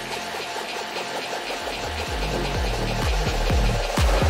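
Electronic dance music mixed live on a DJ controller during a transition between two 128 BPM tracks: the bass drops out at the start, then a kick drum comes back in about halfway, hitting about twice a second and getting louder.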